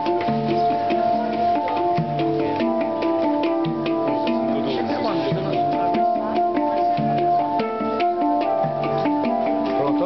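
Two handpans (hang drums) played together with the fingers: struck steel notes ring out and overlap in a melody, over a deep low note that recurs every second or so.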